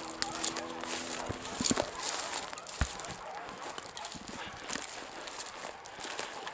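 Footsteps through dry tall grass, with beagles baying faintly in the distance as they run a rabbit.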